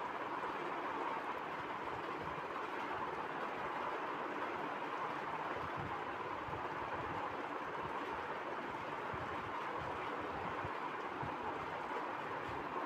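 Steady, even background hiss with no speech, unchanging throughout.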